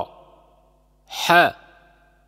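A man's voice slowly pronouncing one Arabic syllable, the breathy 'ḥa' of the letter ḥā, with a short trailing reverberation; the end of the syllable before it fades out at the start.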